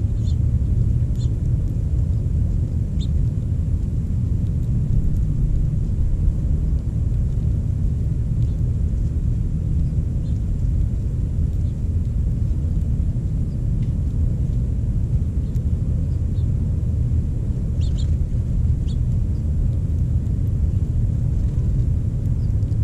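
Steady low rumble outdoors, with a few faint short high chirps or ticks about a second in, near three seconds and twice around eighteen seconds.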